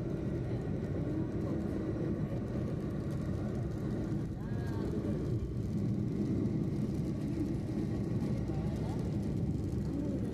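Steady low rumble of a car driving along a highway, heard from inside the cabin.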